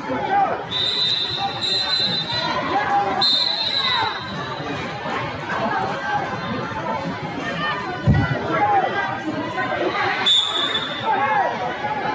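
Referee's whistle blasts over a wrestling hall full of overlapping voices: two short blasts about a second in, another around three seconds, and one more near the end. A single dull thud comes about eight seconds in.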